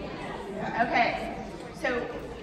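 Only speech: a woman's voice and murmured chatter in a large hall.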